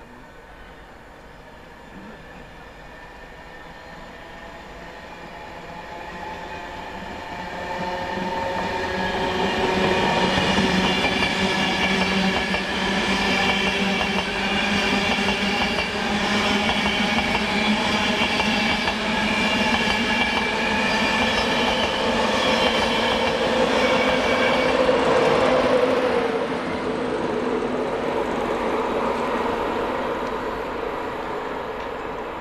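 Slow-moving electric passenger train of Mk4 coaches, led by a class 82 driving van trailer and pushed by a class 91 electric locomotive, passing close by. Its rumble grows over the first ten seconds into a steady passing sound with a whine of several steady tones, loudest about 25 seconds in before it eases off.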